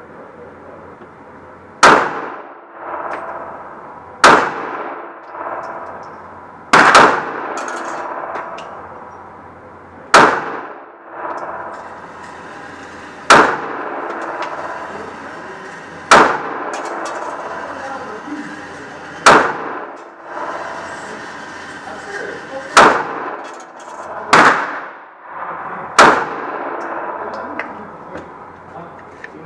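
Smith & Wesson M&P 9 9mm pistol fired about ten times in slow, aimed shots two to three seconds apart, each report echoing off the walls of the indoor range.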